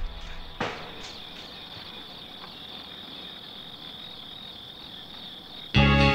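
Crickets chirring in a steady, continuous high trill. A short sharp hit comes about half a second in, and loud music starts just before the end.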